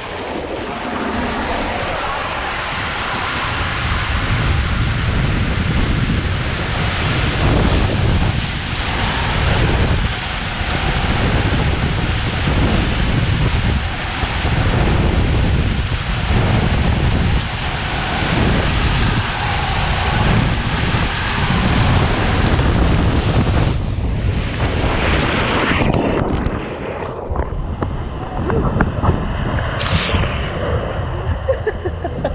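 Water and air rushing over the camera's microphone as a rider slides down an enclosed tube water slide, with low rumbles coming and going. Near the end the ride runs out with a splash into the runout trough.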